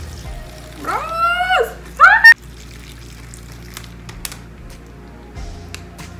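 Hot water poured from a metal pot into a chip bag of crushed Doritos and instant ramen, a faint pouring trickle under steady background music. A loud, rising excited shout comes about a second in.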